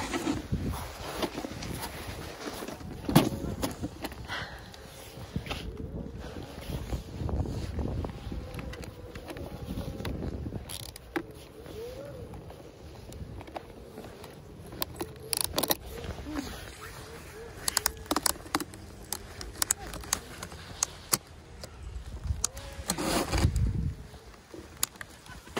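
Snowboard binding straps being fastened: scattered sharp ratchet clicks amid rustling of snow clothing and handling noise on the phone's microphone.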